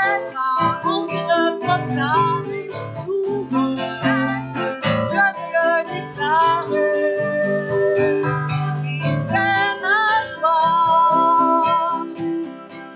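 A woman singing a French worship song while strumming an acoustic guitar.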